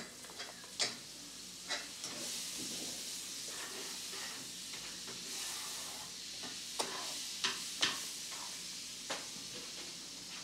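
A steady high hiss comes in about two seconds in and eases toward the end, with scattered light clicks and taps of small hands at plastic bowls and food.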